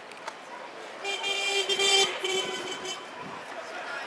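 A vehicle horn sounds once, a steady note lasting about a second and a half, over the low noise of street traffic.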